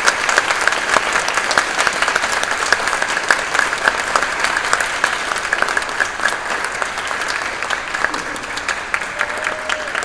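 Audience applauding with steady, dense clapping that thins slightly near the end.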